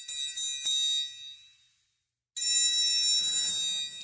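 Sampled triangle from the Kontakt Factory Library played through a software instrument. A quick run of several strikes in the first second blends into one bright, high ringing that fades out by about a second and a half. After a short silence comes a single strike that rings for over a second, its attack sounding properly triangle-like.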